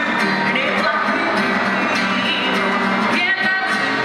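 Live acoustic guitar strummed as accompaniment while a woman sings into a microphone.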